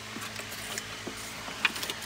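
Small handling noises as insulated wire leads with crimp connectors are picked up and moved by hand: faint rustling with scattered light clicks, and a few sharper ticks near the end.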